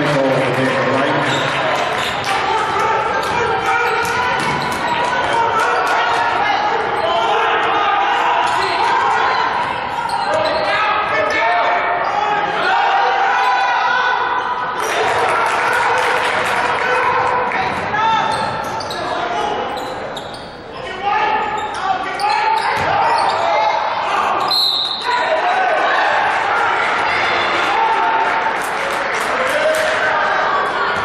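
Basketball bouncing on a hardwood gym floor during play, with voices of players and spectators echoing in a large hall.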